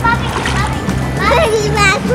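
Pool water splashing as people move in it, over background music with a steady bass line; a child's high voice calls out in the second half.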